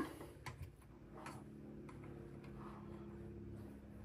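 A few faint clicks and light taps from handling a Crosman 1875 Remington CO2 revolver and its removed cylinder, spread over the first two seconds, over a faint steady hum.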